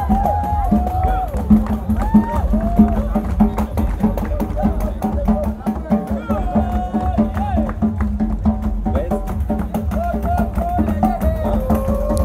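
Live capoeira roda music: a steady drum beat about four strokes a second with hand percussion, and voices singing a melody over it.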